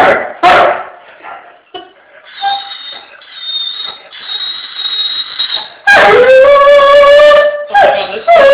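A Doberman gives a short bark just after the start, whines faintly and high for a few seconds, then lets out a loud long howl about six seconds in that rises briefly and holds one pitch, with another starting at the end.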